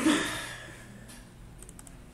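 A man's voice trailing off at the start, then, about a second and a half in, a quick run of four light clicks from a computer mouse and keyboard.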